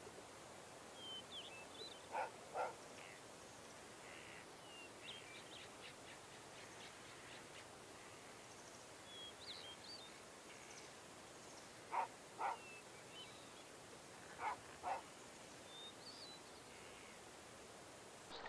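Faint outdoor background with small birds chirping on and off. Three times, a louder short double call sounds, its two notes about half a second apart.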